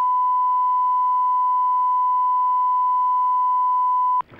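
Broadcast line-up tone: one steady, unbroken pure beep at a single pitch, the test tone played as the broadcast feed is closed down.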